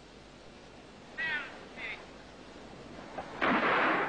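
Starting pistol shot about three and a half seconds in, at once followed by a crowd roaring as a sprint race starts. Before it, a hushed hiss of old film sound broken by two brief high calls about a second in.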